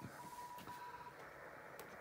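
Faint hiss from a Yaesu FTdx5000 HF transceiver's speaker, with a thin steady tone that fades about a second in, and a light click near the end as the front-panel controls are handled.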